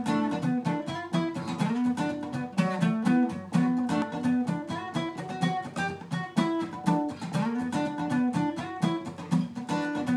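Steel-string dreadnought acoustic guitar played solo, with picked chords over a moving bass line in a steady, driving rhythm.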